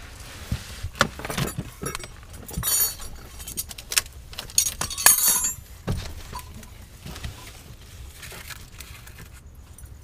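Metal clinking and knocking of wrenches and a steel bracket being handled against a car's underside: a busy run of sharp clinks over the first six seconds, loudest about five seconds in, then only faint handling.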